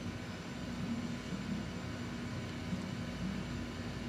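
Steady background noise with a faint low hum running underneath, unchanging throughout.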